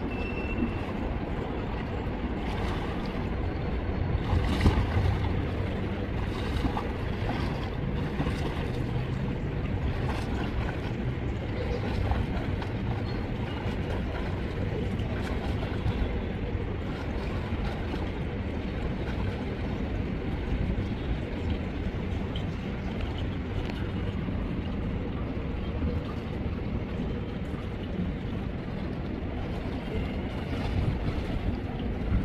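Poolside ambience: a steady low rushing of wind on the microphone, with water splashing from a swimmer doing breaststroke drills.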